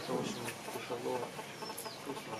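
Birds calling faintly in the background, with short high whistled chirps, one near the end, over lower calls.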